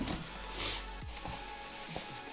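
Quiet background music, with a brief soft rustle of bubble wrap being handled about half a second in.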